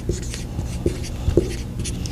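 Dry-erase marker writing on a whiteboard: a quick series of short strokes with a few light taps of the tip, over a steady low room hum.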